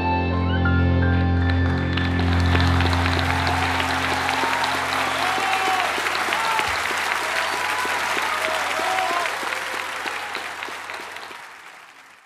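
A tango ensemble's final held chord, with piano among the instruments, dies away over the first few seconds as the audience breaks into applause about two seconds in. The applause fades out near the end.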